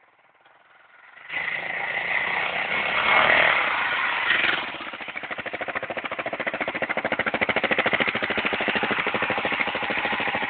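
Armstrong MT500 army motorcycle's single-cylinder four-stroke engine, faint at first, then loud from about a second in as the bike rides up close. It then settles into a steady idle with an even, rapid beat.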